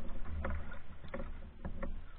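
Canoe being paddled: irregular light knocks and splashes from the paddle and water on the hull, a few a second, over a steady low rumble.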